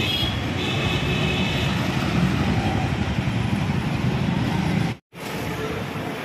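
Steady street traffic noise, a low rumble of passing vehicles, which cuts out briefly about five seconds in.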